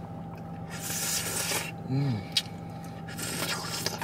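Someone slurping a soft acai bowl off a spoon, twice, each slurp about a second long, with a short 'mm' between.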